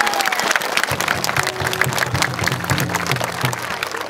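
A crowd clapping their hands, with music playing underneath.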